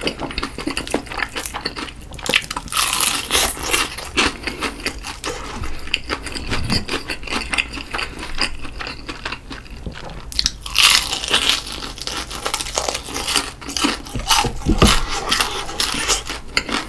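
Close-miked chewing of crispy fried chicken: the batter crust crunches and crackles irregularly between wet chewing, with louder spells of crunching about three seconds in and again near the eleven-second mark.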